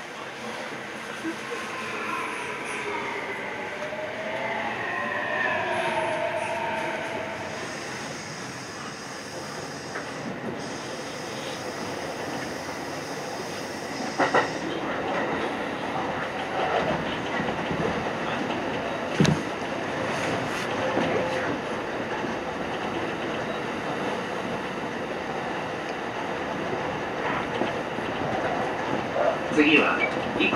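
Kintetsu electric train running at speed, heard from the driver's cab. In the first several seconds, whining motor tones slide in pitch as an oncoming train passes alongside; from about halfway, the wheels click over rail joints.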